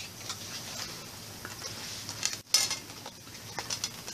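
Light clicks and clatter of a small metal Spider-Man zipper tin being picked up and handled, with a louder rattle about two and a half seconds in that cuts off abruptly.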